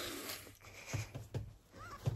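Two people laughing with their hands over their mouths: muffled, breathy giggling in short bursts, with a small squeak near the end.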